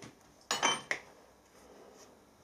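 A single metallic clink, steel knocking against steel on the milling-machine vise or table, about half a second in, with a brief high ring.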